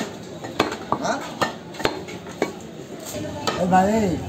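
Steel cleaver chopping beef on a wooden log chopping block: about six sharp, irregularly spaced strikes.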